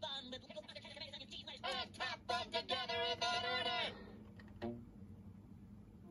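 A high-pitched cartoon character's voice, edited and warbling up and down in pitch, lasting about four seconds and then stopping. A short blip follows about a second later.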